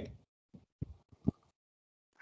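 Near silence as speech stops, broken by four faint, short low thumps or blips in the first second and a half, then nothing.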